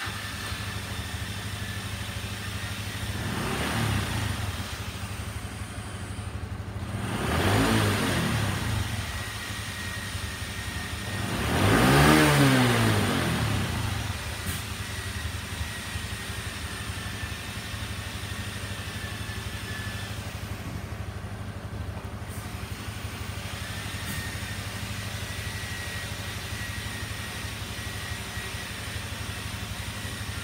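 Step-through motorcycle's small single-cylinder four-stroke engine, just started, idling. It is blipped three times, each rev rising and falling back, with the third, about twelve seconds in, the highest and loudest. After that it settles to a steady idle.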